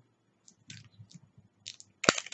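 Faint, scattered small clicks and ticks of a small plastic eyeshadow container being handled.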